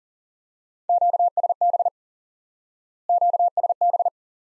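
Morse code at 40 words per minute, sent as a steady single-pitch beeping tone: two quick words about two seconds apart, both the Q-code QSB.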